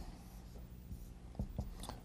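Faint sounds of handwriting over a steady low room hum, with two soft taps about one and a half seconds in.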